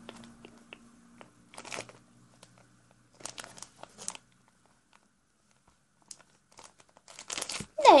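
Clear plastic packaging around a flexible ruler crinkling in short bursts as it is handled.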